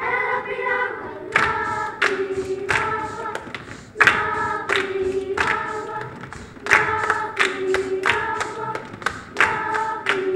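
Children's choir singing in short, clipped phrases, each one starting sharply.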